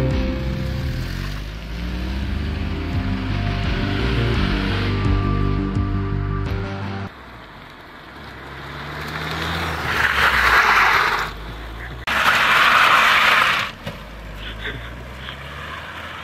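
Background music for the first seven seconds, then it cuts out and an Opel Astra GTC is heard being driven hard, engine running, with two loud rushing bursts of about a second and a half each near the end, as the car slides around an open lot.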